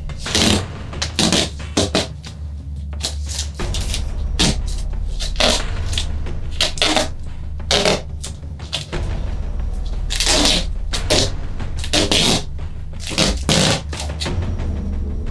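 Silver duct tape being pulled off the roll again and again: a run of short, harsh ripping sounds, one or two a second and unevenly spaced, over a steady low hum.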